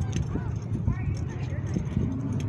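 Indistinct voices over a steady low rumble, with a few light clicks.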